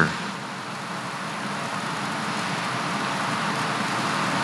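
A steady rushing background noise with no voice, growing slowly louder.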